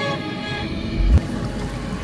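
Soundtrack music of steady held tones, with one deep low boom about a second in.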